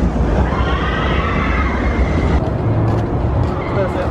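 New Texas Giant hybrid roller coaster train rumbling along its steel track over the wooden structure, with riders screaming. The rumble drops away suddenly about two and a half seconds in.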